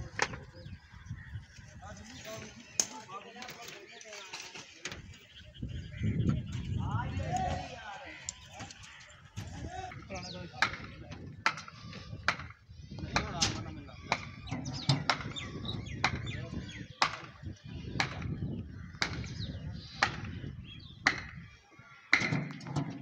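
Sharp, irregular knocks and clanks of hand work on a building site, as a steel hoist bucket is handled and set in place, with people talking.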